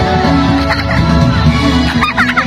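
Dance music playing loudly with a steady bass. Starting almost a second in, high wavering whoops and shrieks from the audience rise over it.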